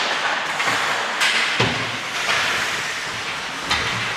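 Ice hockey play on the rink: a steady scraping hiss of skate blades on the ice, with a few sharp knocks, two of them with a low thump, about a second and a half in and near the end.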